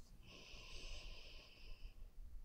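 A faint breath from the woman: a soft, slightly whistling hiss lasting about a second and a half.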